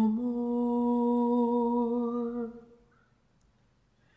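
Unaccompanied soprano voice holding one long, low sung note with a slight vibrato, which fades out about two and a half seconds in and leaves silence.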